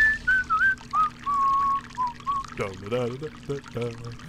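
A man whistling a short tune, its notes stepping down in pitch, over a stream of urine splashing into a toilet bowl; the whistling stops about two and a half seconds in and a man's voice follows.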